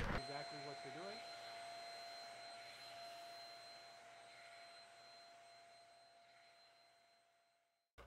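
Shark Rocket Deluxe Pro hand vacuum running faintly on upholstery: a steady high whine over a soft hiss that fades down over the first few seconds, then stops just before the end.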